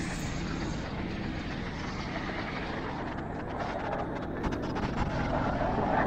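Street traffic and rushing air heard from a moving electric scooter: a steady wash of noise, with an oncoming car growing louder over the last second or two.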